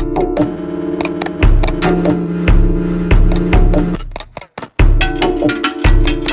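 Electronic soundtrack music: sharp clicking percussion and low beats over sustained droning tones. It cuts out for about half a second a little past four seconds in, then resumes.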